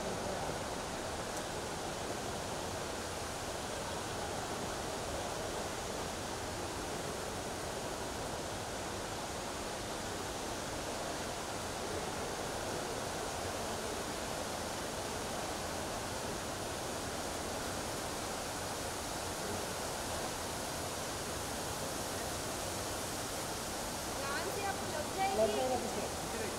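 Steady background hiss and hum of a busy open space, with faint, indistinct voices; a voice starts up close near the end.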